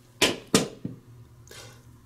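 Two sharp clicks about a third of a second apart, then a fainter third, as the freshly crimped glass vial is handled. A low steady hum runs underneath.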